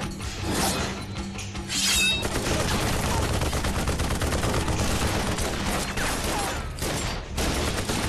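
Dramatized film gunfight: rapid, continuous automatic gunfire from several guns. It begins about two seconds in, after a few blows of a fistfight, and breaks off briefly near the end.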